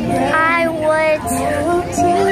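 A high singing voice holding long notes over music, with short slides in pitch between the notes.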